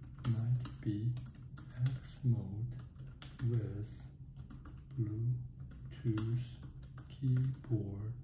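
Typing on a compact Bluetooth keyboard: a quick, uneven patter of key clicks, with a low voice heard in short stretches between them.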